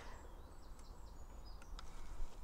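Quiet outdoor background: a low steady rumble with a few faint, brief high bird chirps.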